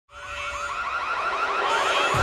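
Electronic warbling siren effect opening a wrestling entrance theme, its pitch swooping up and down about seven times a second. It rises in from silence at the very start.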